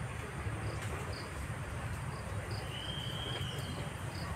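Crickets and other insects chirping outdoors: short high chirps repeating irregularly over a faint steady high trill, with a thin high whistle lasting about a second around two and a half seconds in, and a steady low rumble underneath.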